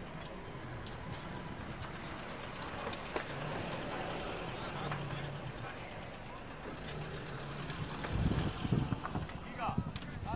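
A motor vehicle's engine running close by among the voices of a crowd, with a louder low rumble about eight seconds in.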